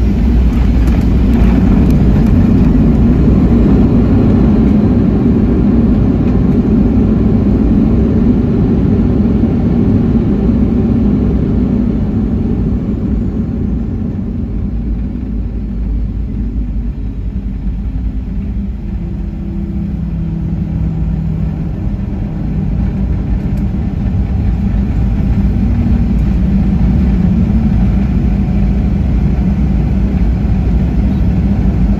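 Boeing 737-700 cabin noise of the CFM56-7B jet engines and rolling airframe as the airliner runs along the runway after landing: a steady low rumble that eases off around the middle and grows louder again near the end.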